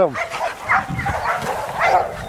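Australian Shepherds barking, a run of short barks.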